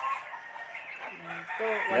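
Faint chicken calls in the background during a pause in talk.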